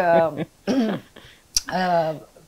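A woman clears her throat with a short cough, between bits of speech.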